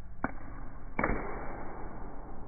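Two sharp knocks, a light one and then a louder one with a short ringing tail, over a low steady background hum.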